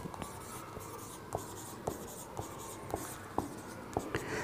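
Marker pen writing on a whiteboard: faint strokes of the felt tip, with light taps about every half second as figures are drawn.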